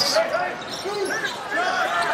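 Basketball players' sneakers squeaking on a hardwood court in several short chirps, over the steady murmur of an arena crowd.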